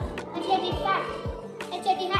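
A young child's voice reading out letters over background music with a steady beat, about two beats a second.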